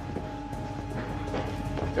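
Background score: a sustained low drone with steady held tones.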